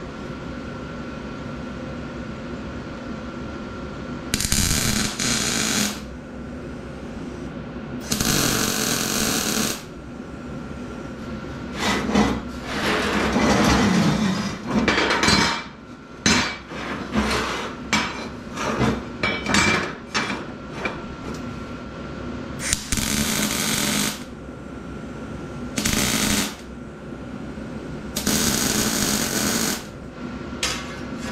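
Electric arc welder laying tack welds on square steel tubing: crackling bursts of about a second and a half to two seconds each, near 4, 8, 23 and 28 seconds, with a busy stretch of short crackles and knocks in the middle. A steady hum runs underneath.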